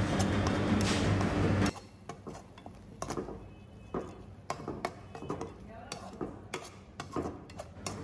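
Slotted metal spoon scraping and tapping against a metal kadai as thick curry-leaf paste is stirred, giving a scattered series of sharp clicks. For the first couple of seconds a steady hiss and hum lies under it, then cuts off suddenly.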